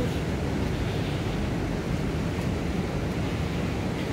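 Wind buffeting the microphone in a steady low rumble, over the rushing of a river.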